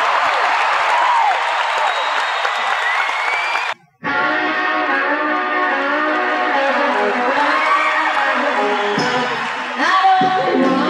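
A live concert audience cheering. It cuts out abruptly just under four seconds in, and then a rock band's electric guitars play sustained chords and notes.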